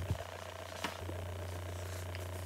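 Quiet pause: a steady low hum, with one faint click a little before a second in.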